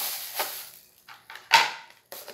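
Clear plastic bag crinkling, then a few light clicks and one sharp clack of hard plastic, about one and a half seconds in, as Tupperware mold parts are handled and fitted together.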